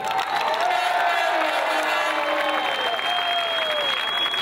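Large crowd applauding and cheering, with long drawn-out shouts sliding slowly down in pitch and a high steady whistle joining about halfway through.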